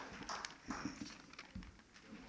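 Soft footsteps and a few faint thumps on a stage floor, with the last of the applause dying away at the start.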